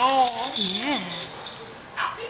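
Plastic bead-and-spinner toy rattle on a high-chair tray, rattling in repeated short bursts, with a voice cooing in a pitch that slides up and down during the first second or so.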